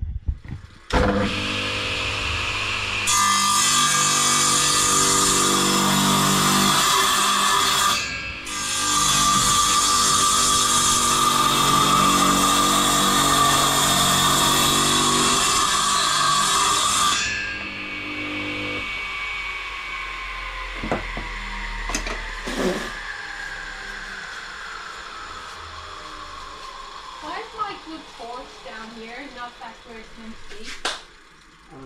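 Radial arm saw motor starting up, then its blade cutting through a wooden board, the cut easing briefly about eight seconds in. After about seventeen seconds the saw is switched off and the blade winds down with a slowly falling whine, with a few knocks as it slows.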